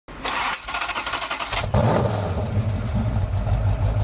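A car engine cranked by the starter with a quick, even pulsing, catching about a second and a half in and then running with a steady low rumble that cuts off suddenly at the end.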